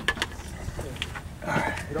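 People's voices: laughter trailing off at the start, then a man starting to speak near the end, over a steady low rumble of wind on the microphone.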